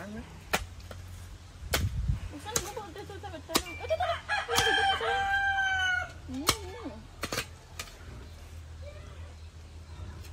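A hoe chopping into soft soil, a sharp knock with each of several strokes spread through the clip. Midway a rooster crows once, the loudest sound.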